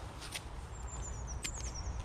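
Faint bird call, a high, thin run of short chirps starting about a second in, over a low steady rumble and a few soft handling rustles.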